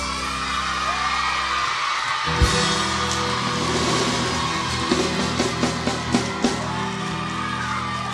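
A live band with drums, guitars and bass plays the final held chords of a song, with a sharp drum hit about two and a half seconds in. Audience yells and whoops come over the music.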